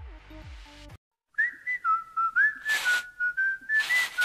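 A whistled tune starts about a second and a half in: a single clear tone stepping and sliding between a few notes, broken by two short bursts of hiss.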